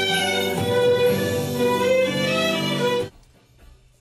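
Music with violin and plucked strings played loudly on a hi-fi stereo system, dropping abruptly about three seconds in to faint music, as heard through the wall in the neighbouring house during a loudness test.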